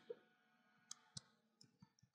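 A few faint keystrokes on a computer keyboard, spaced apart, as a command is typed.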